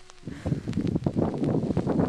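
Wind buffeting the camera microphone, starting abruptly a quarter second in as background music cuts off.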